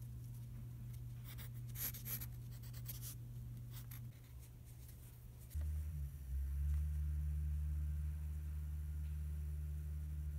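Pencil drawing on grid paper, scratching in a run of short strokes for the first four seconds over a steady low hum. A little after five seconds in the strokes stop and a louder, deeper steady hum takes over.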